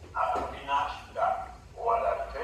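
Speech only: a man talking in Italian over a video link, heard through the room's loudspeakers.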